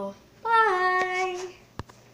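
A girl's voice holding one long sung note for about a second, its pitch falling slightly, followed near the end by a single sharp click.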